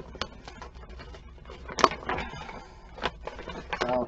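A stapled paper shopping bag being pulled and torn open: irregular crinkling and tearing of paper, with a sharp snap a little under two seconds in and more sharp clicks near the end.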